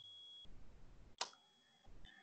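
Near silence with a single short click a little past a second in.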